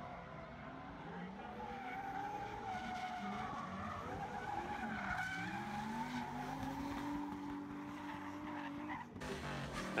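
Two drift cars running a tandem battle: their engines rev up and down under the sound of sliding tyres. The engine pitch sinks to a low point about halfway through, then climbs steadily, and the sound cuts off abruptly near the end.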